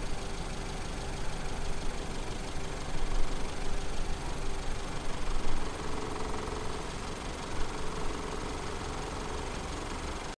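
Suzuki SX4 car engine idling steadily, a little louder for a few seconds mid-way.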